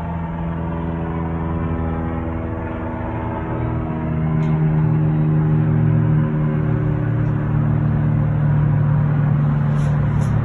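An engine running with a steady low hum that grows louder about four seconds in.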